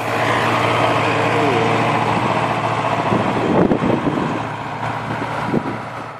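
Zetor Proxima tractor's diesel engine running steadily under load, pulling a mounted reversible plough through the soil. The sound fades out near the end.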